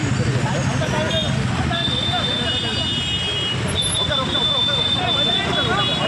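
Many voices talking at once over steady street traffic noise. A high steady tone sounds for a few seconds in the middle.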